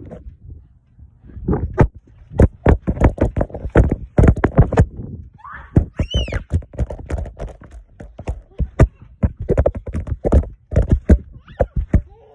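Irregular thumps and rattles of bouncing on a trampoline, several a second. A child's short, high squeal comes about six seconds in.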